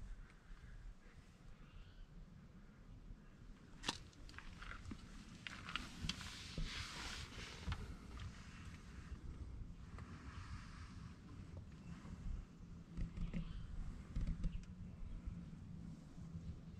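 Faint rustling and shuffling of someone moving about by hand, with one sharp click about four seconds in.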